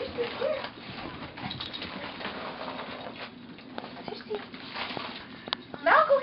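Gift wrapping paper rustling and crinkling as a small dog tears at a present, with a short sharp click near the end.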